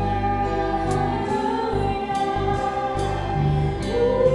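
A church praise team of several men and women singing a slow praise song together into microphones, on long held notes. A low, steady accompaniment sounds beneath the voices.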